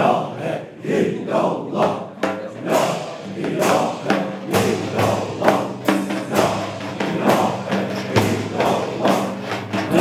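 A group of men chanting a Sufi dhikr in unison, with hand cymbals and frame drums striking a steady beat of about two strokes a second.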